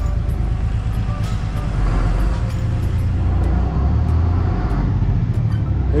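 Steady low rumble of road traffic, growing a little louder about two seconds in.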